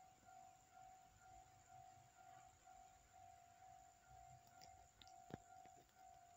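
Near silence: room tone with a faint steady high hum and a small click about five seconds in.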